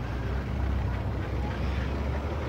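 Street traffic: a steady low rumble of passing vehicles.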